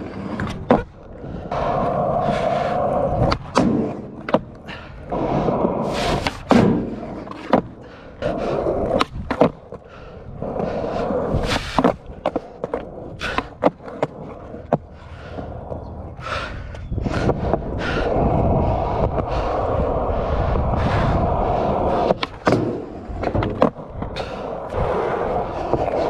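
Skateboard wheels rolling over concrete, broken again and again by sharp clacks and slaps of the board: tail pops, landings and the deck or trucks striking ledges and the ground.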